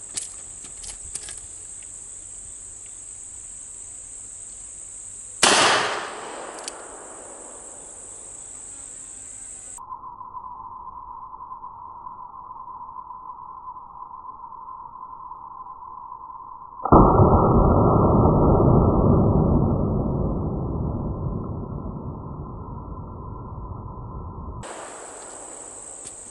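A .45 ACP shot from a 1917 Smith & Wesson revolver about five seconds in: one sharp crack with a short echo, over a steady high drone of insects. Later the sound is slowed down and deepened. A long, muffled, low gunshot boom starts about two-thirds of the way through and fades over several seconds.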